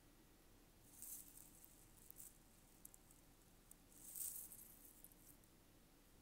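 Near silence broken by two faint, brief rustles, the first about a second in and the second just after four seconds, with a few tiny clicks between.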